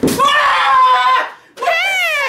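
A man screaming in anger without words: one long, high, held scream, then a second scream starting about one and a half seconds in that slides down in pitch.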